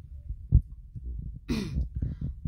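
Low rumble and thumps close to the microphone, with one loud thump about half a second in. Near the end comes a short breathy vocal sound whose pitch bends.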